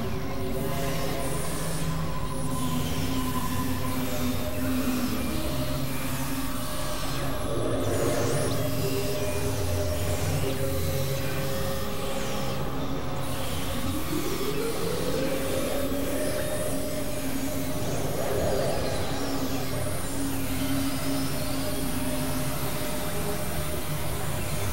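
Experimental electronic synthesizer drone music: several sustained tones layered over a noisy hiss, with a tone sliding upward in pitch about halfway through and small falling sweeps up high.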